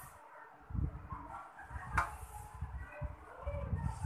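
Hands pressing and smoothing a pile of homemade salt-and-toothpaste kinetic sand on a tabletop: soft low thuds, with a sharp click about halfway through.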